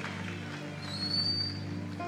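Soft background music of sustained, held chords, with a brief thin high tone about a second in.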